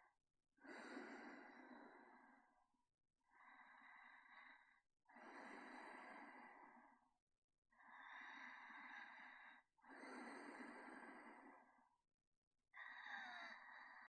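A person's faint, slow breathing close to the microphone: soft breaths in and out, one every second or two, about six in all.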